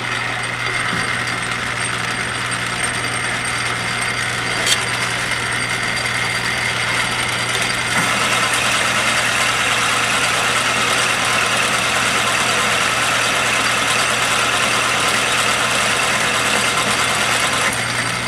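Metal lathe running, its three-jaw chuck spinning while the tool takes a roughing cut on a metal part: a steady motor hum under a hiss of cutting noise that grows louder about eight seconds in. One brief click near the five-second mark.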